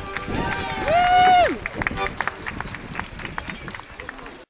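A loud shouted whoop from a voice, rising, held for about half a second, then dropping away, as the Morris tune ends. It is followed by scattered sharp clicks over the noise of a street crowd.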